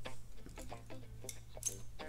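Light, irregular clicks and taps of small metal parts as an iPhone 5s is taken apart by hand, a metal connector bracket being lifted off the logic board, over a steady low hum.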